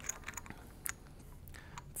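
Faint, scattered small clicks and taps of a brass Y-strainer valve assembly and its cap being handled.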